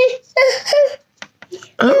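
A one-year-old toddler whining in two short, high-pitched wails in the first second. Near the end a woman starts speaking.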